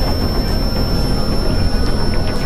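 Dense, steady electronic noise from a layered experimental mix: a low rumble under a hiss, with a thin high whistle.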